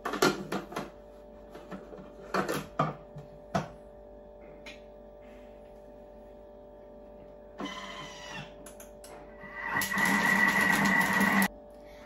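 Lid of a Thermomix kitchen machine clicked and knocked into place, a brief mechanical whirr, then the machine's motor runs for under two seconds with a steady high tone, mixing cookie dough, and cuts off suddenly.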